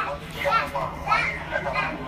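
Voices talking in a room, high-pitched and child-like, over a steady low hum.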